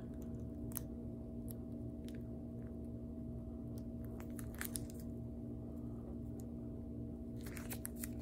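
Rigid plastic card holders clicking and crinkling as a stack of sleeved trading cards is flipped through by hand, in scattered short handling noises that cluster about halfway through and again near the end. Under it runs a steady room hum.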